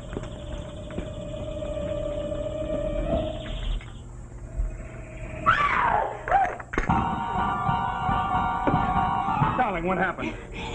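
A held soft music note, then a woman's frightened scream about five and a half seconds in, set off by a spider found on her camera strap, followed by a loud dramatic music sting of held chords.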